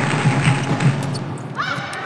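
Badminton rally on an indoor court: thuds of players' footwork and racket strokes on the shuttlecock, with a short rising shoe squeak about one and a half seconds in.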